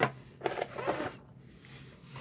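A sharp click, then brief rustling and knocking as a handheld digital oscilloscope is picked up off the workbench and handled.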